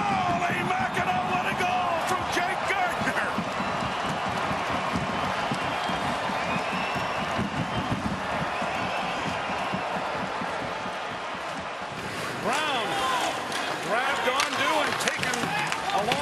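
Ice-hockey arena ambience: a steady crowd hubbub. In the last few seconds there are sharp knocks of sticks, puck and bodies against the boards as live play resumes.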